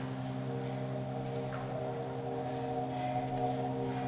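A steady drone of several low tones held together as one chord, with a higher tone joining about half a second in.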